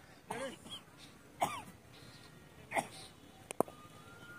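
Three short shouts from players on a cricket field, then near the end a sharp double knock of the leather cricket ball as the delivery reaches the batsman.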